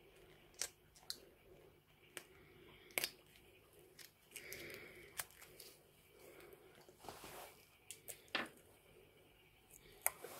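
Faint, scattered clicks and crinkling of gloved hands opening a plastic bottle of aquarium tap water conditioner, with a few longer soft rustles between the clicks.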